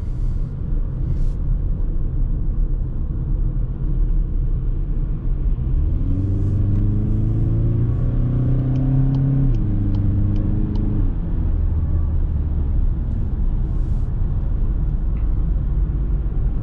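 Inside the cabin of a VW Passat 2.0 TDI, four-cylinder diesel, under acceleration, with steady tyre and road rumble throughout. From about six seconds in the engine note rises, then drops back twice, near ten and eleven seconds, as the automatic gearbox shifts up.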